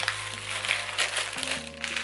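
Plastic cookie bags and tissue paper crinkling in short rustles as hands press and cushion items into a packed shipping box, over steady background music.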